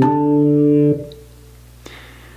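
A low D played on a keyboard, the upper note of a C-to-D whole step, held steadily for about a second and then cut off when released. A faint hum and one small click follow.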